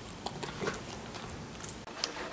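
A dachshund chewing a treat: a few faint, scattered crunching clicks, with a sharper click about one and a half seconds in.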